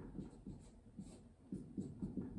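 Dry-erase marker writing on a whiteboard: a quick, irregular run of short, faint scratchy strokes as a word is written.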